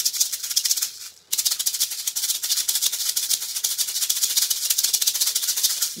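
A pair of Cuban-style maracas shaken fast and continuously: each forward-and-back stroke throws the fill inside forward, back and down again, giving a quick triplet rattle. The shaking stops briefly about a second in, then resumes.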